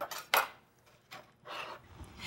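A kitchen knife chopping through a tomato and knocking on the cutting board: two sharp knocks close together at the start, then a few fainter sounds.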